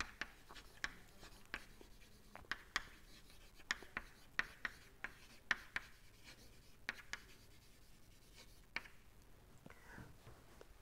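Chalk writing on a blackboard: an irregular run of short taps and scratches as words are chalked out, thinning out about nine seconds in.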